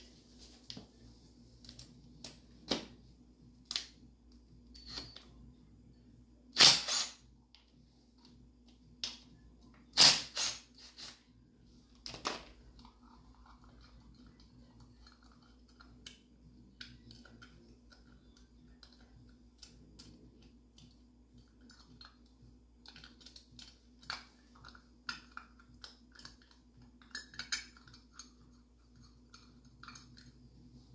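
Hand tools and metal engine parts clinking and knocking during work on a small ATV engine's cylinder head: scattered light clicks and clanks, with louder knocks about seven and ten seconds in. A faint steady hum runs underneath.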